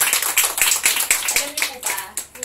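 A small group of people clapping their hands, many quick claps overlapping, tapering off near the end.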